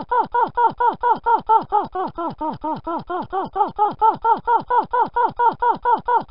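A short, pitched, voice-like syllable repeated rapidly and evenly, about six times a second, each repeat sliding down in pitch: a looped stutter of a cartoon character's exclamation.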